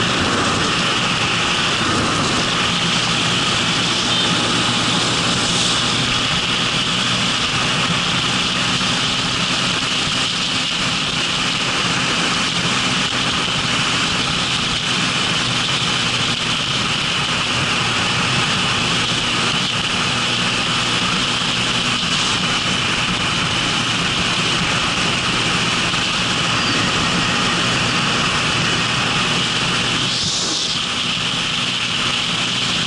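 Motorcycle engine running at a steady cruising speed, mixed with wind and road noise rushing over the microphone.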